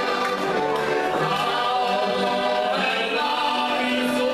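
Three heligonkas, Slovak diatonic button accordions, playing a folk tune together, with the players singing along in harmony.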